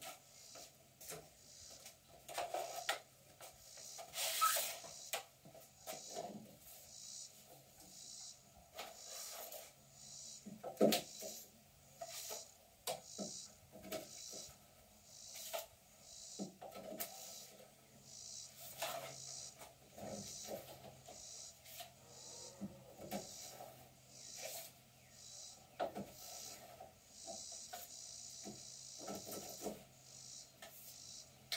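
Plastic pipes being fed through drilled holes in wooden boards: irregular scraping and rubbing of pipe against wood, with light knocks and clatters as the pipes are handled, one louder knock about eleven seconds in.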